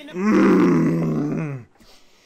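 A man's loud, drawn-out groan lasting about a second and a half, dropping in pitch as it ends.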